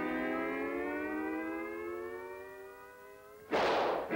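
Cartoon sound effect: a long siren-like whine, rising slowly in pitch and fading, for a character shooting up into the sky, then a sudden loud crash about three and a half seconds in as he lands.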